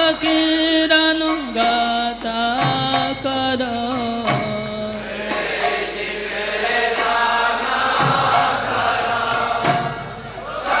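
Devotional kirtan chanting. A single lead voice on a microphone sings held notes for the first half, then the congregation answers in chorus, over mridanga drum strokes and karatalas hand cymbals.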